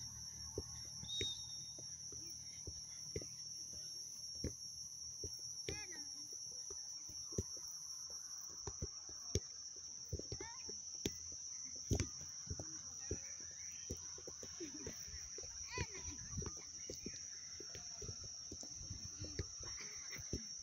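Soccer ball being dribbled on grass: a run of soft, irregular taps from the ball touches and footsteps, with a steady high whine behind them and a few brief distant calls.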